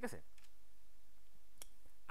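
A few sparse clicks from computer keys as a number is corrected, one sharp click about a second and a half in and fainter ones about half a second in.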